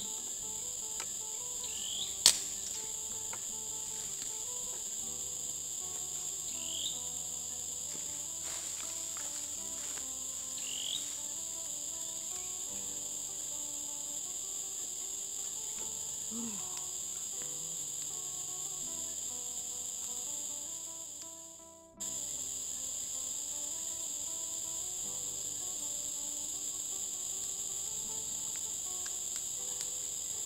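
Steady high-pitched chorus of insects, with a single sharp knock about two seconds in. The sound fades out and cuts back in about two-thirds of the way through.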